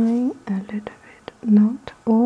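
Speech: a voice talking in short phrases, with a few faint clicks between them.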